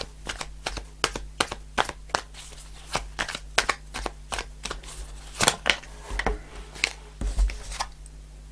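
A deck of tarot cards being shuffled in the hands: a quick, irregular run of sharp card snaps, several a second, that thins out near the end.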